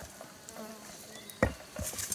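A fly buzzing close by in the first half, then a sharp knock about one and a half seconds in and a softer one just after, as a tool strikes the soil, with light scraping of dirt and dry leaves.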